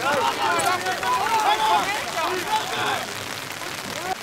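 Several men shouting at once, loudest in the first three seconds and easing off near the end, over a steady hiss of rain.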